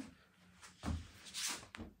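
Quiet room with a few faint, brief rustling sounds from a phone being handled, about half a second in and again near the end.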